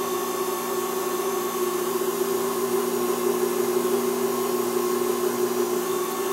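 Wood lathe running steadily at about 1400–1500 RPM with a pen mandrel spinning, a constant motor hum and whine.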